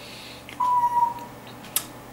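A bird whistling one steady, clear note lasting under a second, followed shortly after by a single short click.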